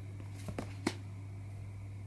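Quiet room tone with a steady low hum, and a few soft clicks a little after half a second in from tarot cards being handled.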